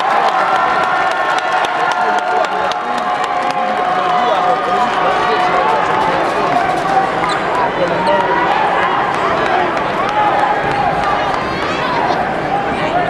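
Basketball arena crowd noise: many voices yelling and cheering at once, with the thuds of a ball bouncing on the court.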